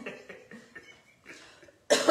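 A woman coughs at the very end, a sudden loud burst after a quiet stretch.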